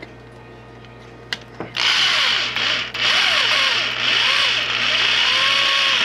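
Electric drill boring out a vent hole to 5/16 inch in the thin metal back plate of a water heater thermostat. A click comes just before the drill starts about two seconds in. It stops briefly about a second later, then runs on with its whine wavering as the bit cuts into the metal.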